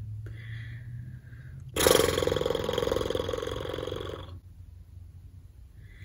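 A person's voice making one long, low, creaky throaty sound, like a burp or a drawn-out groan. It starts about two seconds in and lasts about two and a half seconds.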